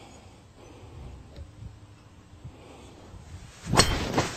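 A golf driver striking a ball off the tee: one sharp, loud crack near the end.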